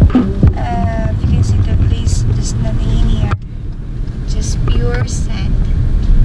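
Steady low road and engine rumble heard inside a moving car's cabin. The higher hiss drops off abruptly a little over halfway through.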